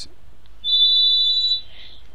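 A single high-pitched steady beep, about a second long, starting just past half a second in and followed by a brief soft hiss.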